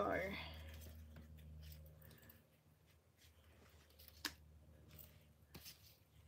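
Faint handling of small paper die-cut pieces on a craft mat, with two sharp little clicks about four and five and a half seconds in as pieces or a tool are set down.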